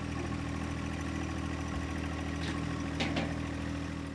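Tractor engine idling steadily, an even low hum, with two brief faint high-pitched sounds a little past halfway.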